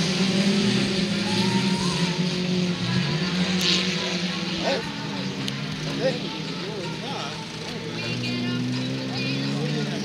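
Autocross cars' engines running on a dirt track, several engine notes at once rising and falling as the cars accelerate and back off.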